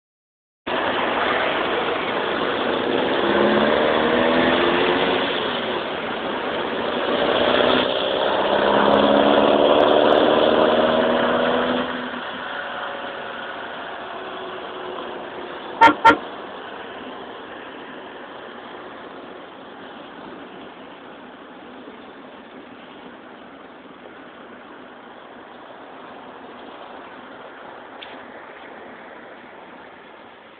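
A car engine accelerating hard in two pulls, rising in pitch each time with a gear change between. Then it settles to a quieter steady cruise with road noise. Two short horn toots come about sixteen seconds in.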